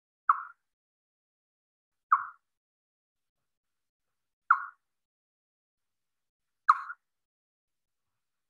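Recorded echolocation calls of a spotted bat played back slowed down ten times: four short calls, each starting sharply and fading quickly, about two seconds apart.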